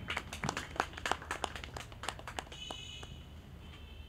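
Faint, scattered hand clapping from a few people, thinning out and stopping after about two and a half seconds.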